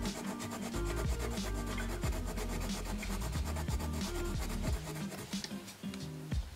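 A wax-based Derwent Chromaflow coloured pencil scratching back and forth on toned kraft paper as two greens are blended, stopping near the end. Background music plays underneath.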